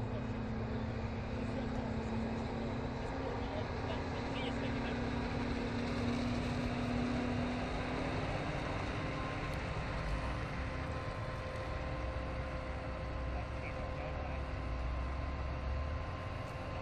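Krone Big X 650 self-propelled forage harvester running steadily under load as it chops maize, a constant machine drone with steady engine tones. In the last seconds a deeper tractor engine note grows louder as a tractor with a silage trailer pulls close.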